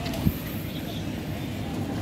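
Outdoor ambience: a steady low rumble, with one short thump about a quarter second in and faint voices.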